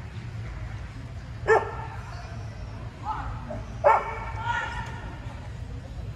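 A dog barking twice, two sharp barks about two and a half seconds apart, the second trailing off into a weaker call.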